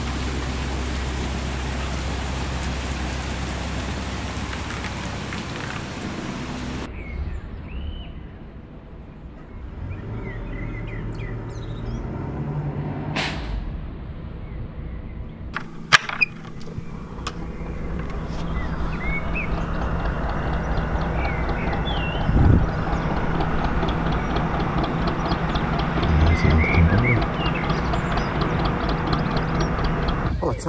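A narrowboat engine running steadily under a rushing noise of water and wind. After a sudden cut, birds chirp over a lower, steady engine hum. There are two sharp knocks about 16 seconds in.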